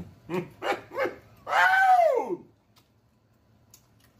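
A man laughing: three short bursts of laughter, then one longer high-pitched laugh that falls steeply in pitch.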